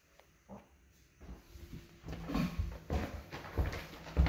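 Footsteps on a hard floor, about two a second, starting about a second in, with a faint low hum underneath.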